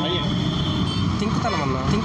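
Men's voices exclaiming and talking over a steady background noise of outdoor traffic.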